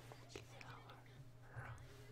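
Near silence: a faint voice, close to a whisper, over a low steady hum.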